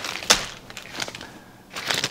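Clear plastic accessory bags crinkling as they are handled, with a few sharp crackles in the first second.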